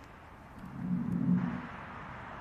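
Low hum of a passing vehicle, swelling to its loudest about a second in and then fading.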